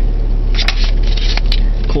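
A plastic DVD case being handled and its paper insert rustled, with a few sharp clicks of the case, over a steady low hum in the car's cabin.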